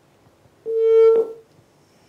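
Telephone line tone coming through the studio phone line: one steady electronic beep, about three-quarters of a second long, about half a second in. The call is not getting through.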